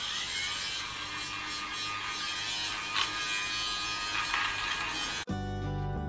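Minky battery-powered lint remover (fabric debobbler) running with a steady motor buzz as it is rubbed over a garment to cut off bobbles. The buzz cuts off abruptly about five seconds in and background music starts.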